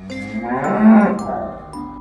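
A cow mooing once, one long call that swells to its loudest about a second in and then fades.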